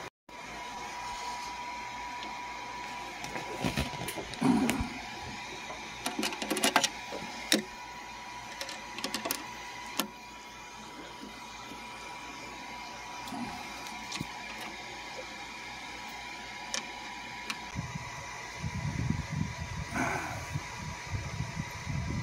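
Scattered clicks and rustles of multimeter test leads, probes and wires being handled, over a steady faint hum. A low rumble of handling noise comes near the end.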